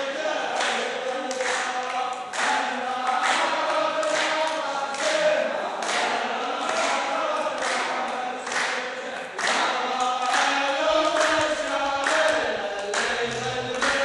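A row of men singing together in chorus, a cappella, with unison handclaps keeping a steady beat of roughly one clap a second.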